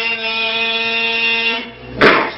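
A voice holding one long, steady chanted note at the end of a phrase, fading out near the end.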